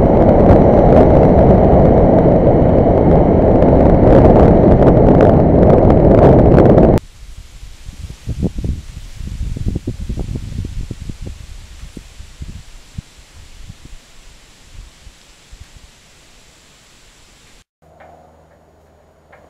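Heavy wind rushing over the microphone of a Kawasaki Ninja 650R at riding speed, drowning out the engine. About seven seconds in it cuts off sharply to a much quieter sound of the motorcycle passing and fading away into the distance.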